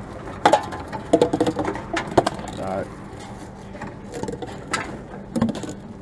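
Tomra reverse vending machine taking in drink containers: a string of sharp clicks and knocks as cans and plastic bottles are handled and pushed into its round intake, over a steady low machine hum.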